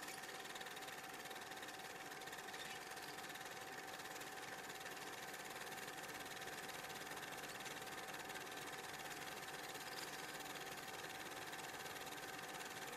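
Low, steady hiss with a faint, even hum-like tone and nothing else: background noise of the recording.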